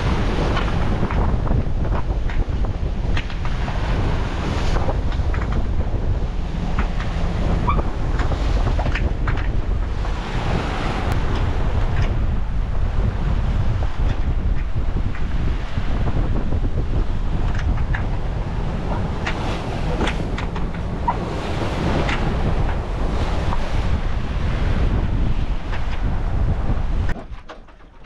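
Wind buffeting the microphone over the rush and splash of water along a sailboat's hull as it moves under sail. The sound is loud and steady throughout and cuts off suddenly near the end.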